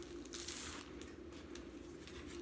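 Adhesive rhinestone wrap sheet rustling as it is handled and laid flat, with a short crinkly rustle about half a second in and a few light ticks, over a faint steady hum.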